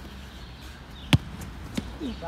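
A football kicked hard: one sharp thump about halfway through, followed under a second later by a softer thud.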